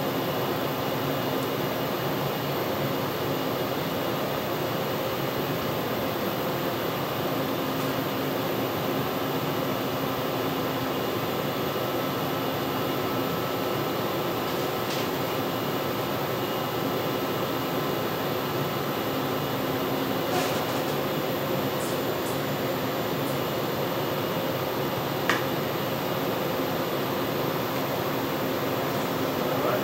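Steady mechanical hum with air noise, as from equipment ventilation, running evenly throughout, with a few brief clicks and ticks in the last third.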